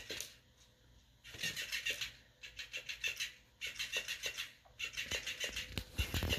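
Electric flipping fish toy flopping its tail against a hardwood floor, in four bursts of rapid flaps about a second each, starting about a second in.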